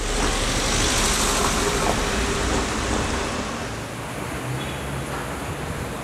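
Street traffic noise: a steady wash of passing road traffic that starts suddenly and eases slightly.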